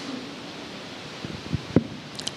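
Pause between spoken sentences: a steady hiss of room noise picked up through the handheld stage microphone, with a few faint clicks about one and a half seconds in.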